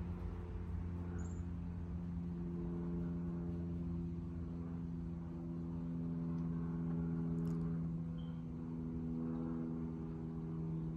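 A steady machine hum holding one pitch throughout, over a low rumble, with a couple of faint short high chirps.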